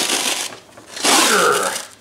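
Fabric back cover being pulled off a Permobil power-wheelchair seat back: two loud noisy bursts of rubbing, ripping fabric. The first ends shortly after the start; the second comes about a second in and lasts under a second.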